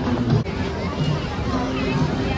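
Hubbub of many voices from a crowd of skaters, over music with a steady beat.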